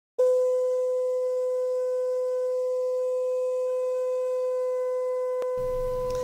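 A steady held mid-pitched tone with faint overtones, starting sharply and easing off slightly in level, played as an intro sound under a title card. A single click sounds near the end.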